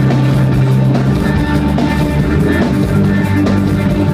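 Rock band playing live: electric guitar, electric bass and drum kit in a loud, steady instrumental passage, with no singing.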